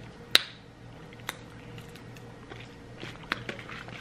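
A few sharp mouth clicks and lip smacks, the loudest about a third of a second in and fainter ones later, as someone tastes a sweet drink.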